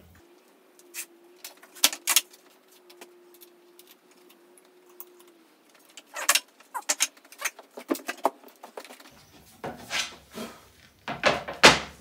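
Scattered sharp clicks and knocks of workshop gear being handled, a track saw's aluminium guide track being positioned on a plywood sheet, loudest in a cluster near the end. A faint steady hum runs through the first half.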